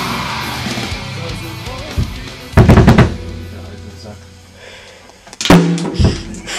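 Heavy-metal music with electric guitar fading out, then a short loud burst of drum-kit hits about two and a half seconds in and a single loud drum hit near the end.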